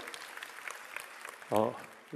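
Audience applauding, a fairly quiet, dense patter of many hand claps, with a man's brief "uh" near the end.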